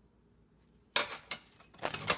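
Circuit boards clattering against each other as one is set down and another is picked up from a pile: a sharp knock about a second in, then a few smaller clicks and rattles.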